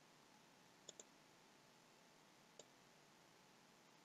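Computer mouse button clicks, faint against near silence: a quick double click about a second in and a single click later.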